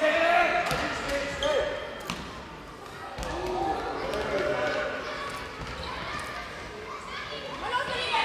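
A handball bouncing on a sports-hall floor several times, the dull impacts echoing in the large hall, under shouting and calling voices.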